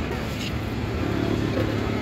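Steady street traffic rumble with indistinct voices in the background.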